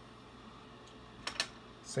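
Small clicks of titanium suppressor baffles being handled in the fingers: a short cluster of clicks about two-thirds of the way in, and another just before a spoken word at the end.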